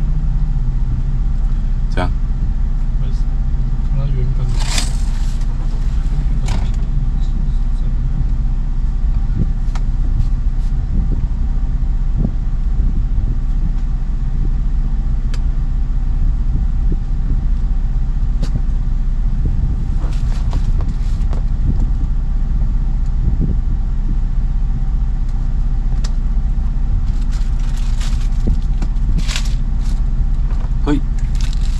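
Motor yacht's engine running steadily, a low drone heard inside the wheelhouse, with a few scattered clicks from a tablet clamp being handled.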